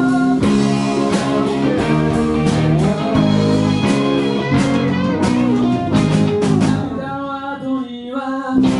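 Rock band playing live: electric guitars, keyboard, bass and drum kit, with singing. The drum hits stop about seven seconds in, leaving a held chord.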